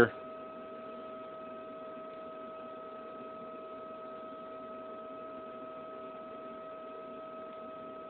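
Steady electrical hum with a high, even whine from a running Zeiss Humphrey topographer.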